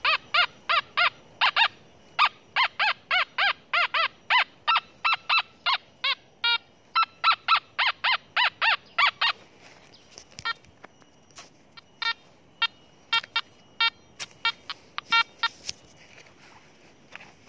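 Nokta Makro Anfibio 14 metal detector sounding target tones as the coil is swept over buried metal. Short pitched beeps come about three a second for roughly the first nine seconds, then turn into fewer, shorter beeps for the rest.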